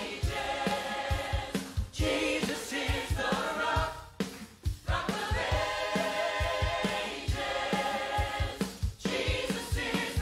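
A small mixed church choir singing a hymn in parts, phrase by phrase with short breaks, over an accompaniment with a steady low beat.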